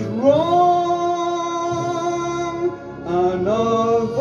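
A man singing karaoke into a microphone over a backing track: one long note that swoops up and is held for about two and a half seconds, a short dip, then the next phrase begins.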